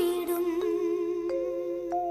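Slow Malayalam Christian devotional song: a long held note over sustained keyboard tones at the end of a sung line, moving to a higher note a little past halfway.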